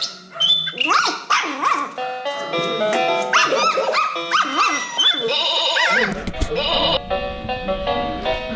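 Electronic notes and jingles from a children's musical play mat, set off as puppies step on its pads, mixed with short barks. From about six seconds a steadier run of notes continues with a low rumble underneath.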